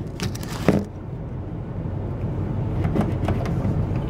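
A screwdriver clicking and knocking against the plastic valve assembly as it is fitted to the spring cartridge's Phillips centre screw, then a few faint ticks as the screw is turned. Under it, a steady low rumble.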